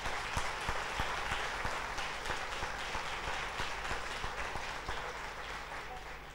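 Audience applauding: a steady patter of many hands clapping that thins and fades out near the end.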